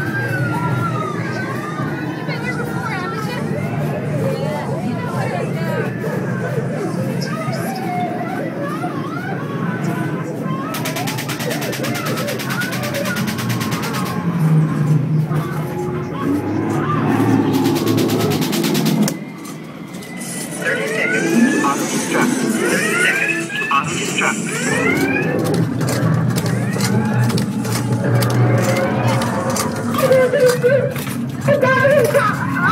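Haunted-house soundtrack of music and sound effects, with people's voices and cries over it. A harsh, rapid buzz sounds twice in the middle, each lasting a few seconds.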